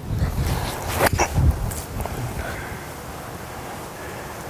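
A golf chip shot: a short, sharp click of an iron striking the ball about a second in, over low wind rumble on the microphone.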